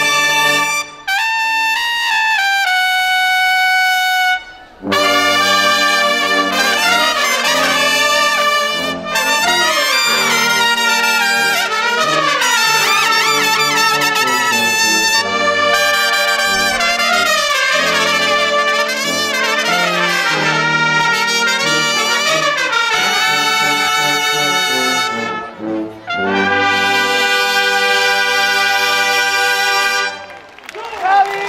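A Bersaglieri fanfare band of trumpets, flugelhorns and tuba playing. A short phrase breaks off about four and a half seconds in, the full band with low brass then takes up the tune, and the piece ends on a long held chord.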